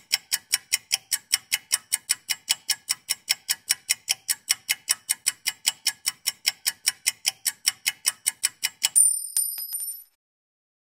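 Countdown timer sound effect: clock ticking quickly and evenly, about five ticks a second, then a high bell ding near the end marking that the time is up.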